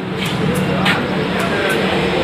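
Steady running noise inside a double-decker train coach: a low hum under a broad rush, with a few sharp clicks.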